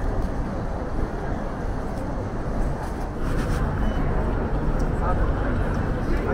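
Busy outdoor street ambience: a crowd's chatter blended with road traffic, the low traffic rumble getting heavier about halfway through.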